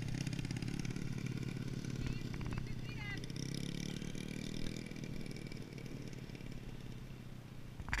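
Small dirt bike engine running, its pitch rising as the throttle opens and the bike pulls away, the sound fading as it moves off.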